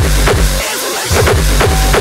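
Hardcore electronic dance music from a live DJ set, with a fast, heavy kick-drum beat. The bass drops out for about half a second midway, then the kicks come back in.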